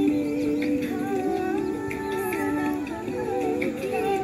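Prayer song playing: a gliding vocal melody over steady held tones beneath.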